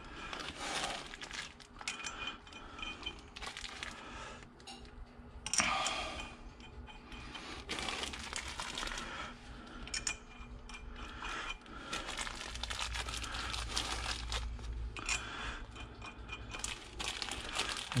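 A small plastic zip bag of bolts crinkling in the hand, in scattered bursts, along with light handling of the bolts as they are spun by hand into the ring gear on a differential carrier.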